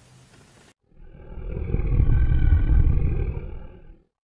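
A long, deep roar sound effect that starts about a second in, swells to its loudest in the middle and tapers away at the end.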